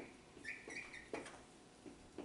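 Dry-erase marker squeaking and scratching on a whiteboard as words are written, with a short high squeak about half a second in.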